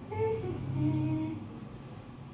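A woman humming a short, low 'mmm' that dips slightly in pitch and then holds steady for about a second.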